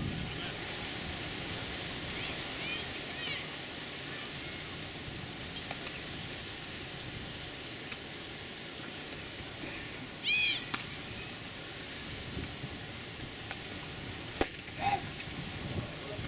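Outdoor ambience at a baseball field: a steady open-air hiss with a few short, high chirps and faint distant voices, and one sharp knock near the end.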